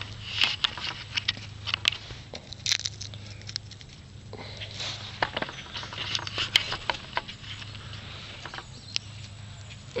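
Papery husk of a ground cherry crackling and tearing as it is picked and ripped open by hand, amid rustling leaves: a string of short, sharp crackles in two spells, quieter in between.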